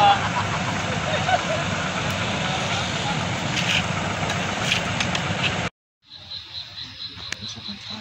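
Steady outdoor noise with a low rumble, like a nearby engine running, and faint voices, cut off abruptly about six seconds in. After a brief silence comes a high-pitched, evenly pulsing chirp, about two to three pulses a second.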